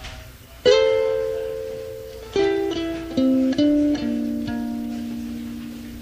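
Electric soprano ukulele played alone: a strummed chord about a second in, then a short run of single plucked notes, the last one left to ring out and fade.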